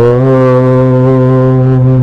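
A deep male voice chanting a long, held 'Om', steady in pitch, over a constant background drone.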